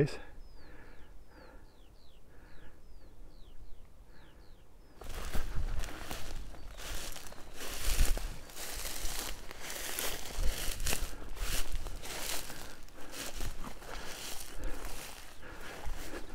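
A bird singing a series of about ten short, falling whistled notes, then, about five seconds in, the sound changes abruptly to footsteps pushing through dense dune grass and scrub, the stems rustling and crunching with each step.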